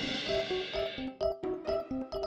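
A cartoon crash sound effect for the strawberry character's fall: a sudden burst of noise at the very start that fades out over about a second. Under it, light, bouncy children's music plays in short, evenly repeated notes.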